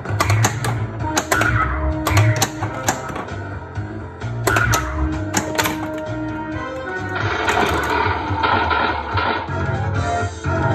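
Bally Who Dunnit pinball machine in play: its game music and electronic sound effects run over sharp, irregular clacks from flippers, solenoids and the ball striking targets. About seven seconds in, a denser, noisier run of effects comes as the Mystery Slots feature starts.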